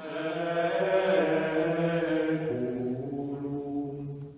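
Background music of slow chanting with long held notes, stepping down to a lower note about two and a half seconds in and fading out near the end.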